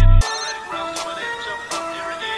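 Dark trap instrumental beat: the heavy 808 bass and drums cut out suddenly a quarter second in, leaving a high synth melody of held notes with a few sparse hi-hat ticks.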